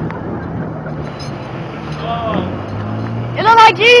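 An engine running with a steady low hum. A short vocal call comes about halfway, and a loud high-pitched whoop of cheering comes near the end.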